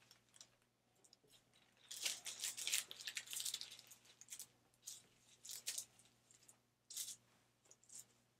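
Thin plastic lamination film crinkling and rustling as it is handled and smoothed flat by hand, in faint irregular bursts starting about two seconds in.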